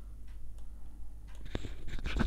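A few soft, separate clicks of a computer mouse button, the strongest about one and a half seconds in, over a faint steady low hum.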